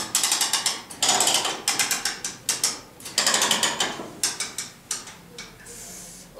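Ratchet on a leg-split stretching machine being cranked to spread the leg bars wider, the pawl clicking rapidly in several quick runs.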